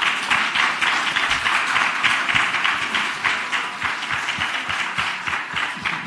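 Audience applauding: many hands clapping steadily, easing slightly near the end.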